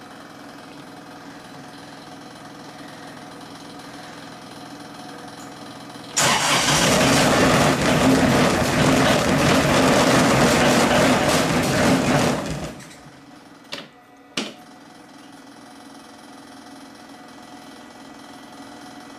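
Kioti CS2410 compact tractor's diesel engine being started in a semi-cold start, its block heater plugged in: a loud, steady run of about six seconds that begins suddenly partway in and cuts off abruptly. Two sharp clicks follow shortly after.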